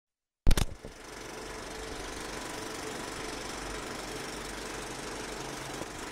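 Old film projector sound effect: a sharp clack about half a second in, then a steady, fast mechanical rattle over a low hum.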